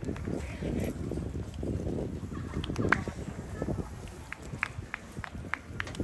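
Wind buffeting the microphone in uneven gusts, with faint distant voices. In the second half comes a run of short, high ticks.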